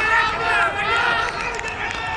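Cricket fielders' excited shouting as a wicket falls, several raised voices overlapping in an appeal and celebration.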